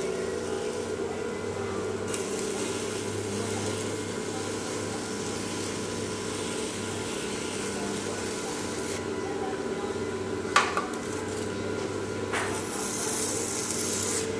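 Electric potter's wheel running with a steady motor hum while wet stoneware clay is trimmed and rubbed away from the base of a spinning pot. Two sharp knocks come late on, a couple of seconds apart, and the second is followed by a brief hissing scrape.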